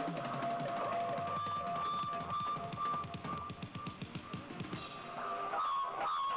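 Live rock drum kit played in fast, even strokes, roll-like, with a held high note ringing over it.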